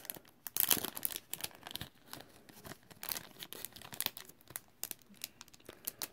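Clear plastic wrapping crinkling in irregular crackles as it is handled and worked off a stack of trading cards, busiest about half a second to a second in.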